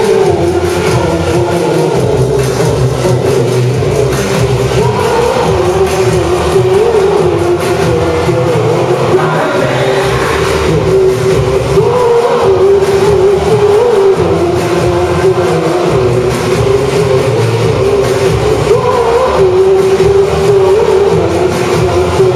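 Live rock band playing loud, unbroken music, electric guitar among the instruments, with a wavering melodic line running over the band.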